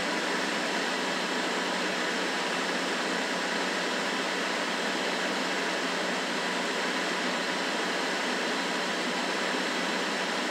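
A steady, even hiss of noise with nothing deep in it and no breaks or changes.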